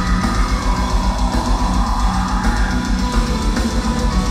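A melodic death metal band playing live, with distorted guitars, bass and dense, driving drums under a sustained melodic lead line, heard loud from within the audience.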